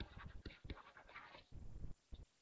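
Faint, irregular scratching and tapping of a stylus writing on a tablet PC screen, a few short strokes and taps.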